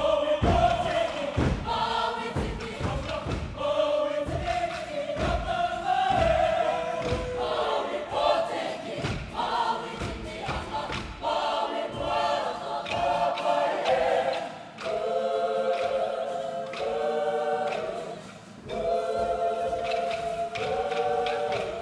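Kapa haka group singing together, with regular low thumps keeping time through the first half. From about halfway, the voices hold long harmonised chords, with a short break near the end.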